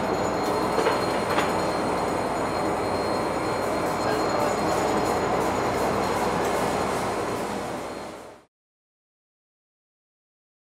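Steady machinery noise of a dairy processing plant, with a few knocks early on as fibre ice cream tubs are handled; it fades out to silence at about eight seconds.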